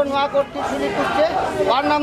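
People talking in a crowd, several voices at once: speech only.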